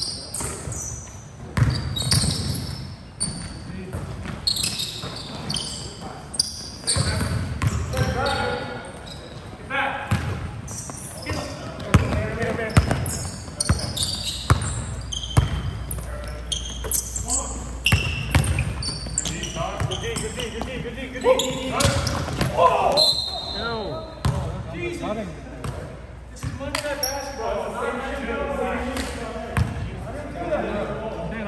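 Basketball game on a hardwood gym floor: the ball bouncing as it is dribbled, short high sneaker squeaks, and players' indistinct calls, all echoing in the hall.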